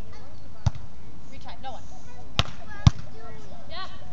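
Beach volleyball being played: three sharp slaps of hands and forearms on the ball. One comes about a second in, then two close together near the end, about half a second apart, the last the loudest. Faint players' voices call in between.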